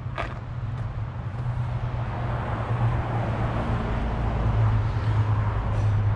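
A motor vehicle engine running steadily nearby, a low hum that grows a little louder over the last few seconds, with a light click just after the start.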